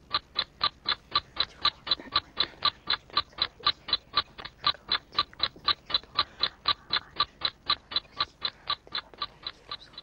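Countdown timer sound effect ticking steadily, about four short, crisp ticks a second, counting down a team's thinking time.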